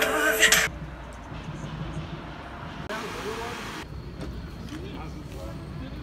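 Music cuts off less than a second in, giving way to quiet outdoor street ambience: a low steady rumble of traffic with faint distant voices, and a short hiss about three seconds in.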